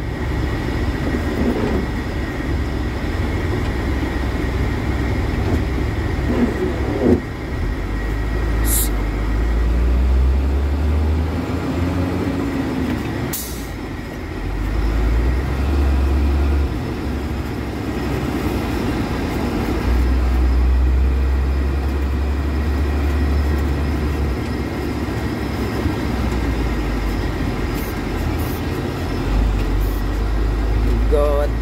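Truck engine and road noise heard inside the cab while driving slowly through traffic: a low rumble that swells and eases in stretches as the engine is put under load and let off. A couple of brief sharp sounds cut through it.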